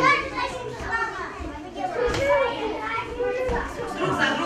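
Several young children talking and calling out over one another in a large hall.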